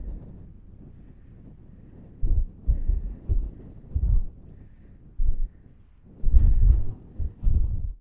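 Wind buffeting the camera's microphone in irregular low rumbling gusts, stronger in the second half.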